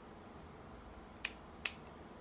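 Two sharp clicks, a little under half a second apart, from the concealer tube being handled as the applicator wand is put away.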